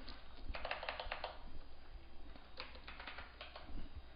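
Quick runs of key taps, one about half a second in and another in the second half, as a calculation is keyed in; a low steady hum runs underneath.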